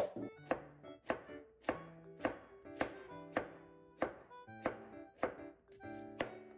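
Kitchen knife slicing a zucchini on a plastic cutting board, a sharp chop about twice a second, evenly paced, over soft background music.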